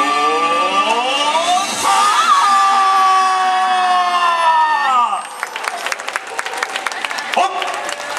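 The last held notes of recorded yosakoi dance music over a loudspeaker, some of them rising, then all sliding sharply down in pitch and cutting off about five seconds in. After that, spectators clap and cheer.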